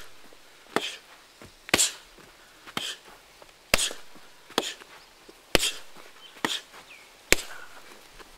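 Kicks landing on a hanging heavy punching bag, a steady string of sharp thuds about one a second, some landing harder than others. A short high hiss follows some of the strikes.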